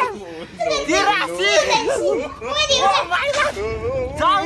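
A woman talking in Mandarin Chinese in a lively, high-pitched voice.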